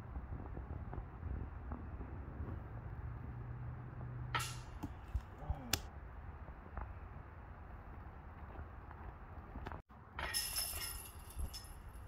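A putted golf disc strikes the metal disc golf basket with a sharp clink about four seconds in. A second clink follows about a second and a half later. The disc does not stay in the basket: a missed putt.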